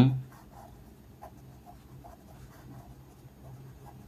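Ballpoint pen writing on ruled notebook paper: faint, irregular little scratches as the letters are formed. A man's spoken word trails off in the first moment.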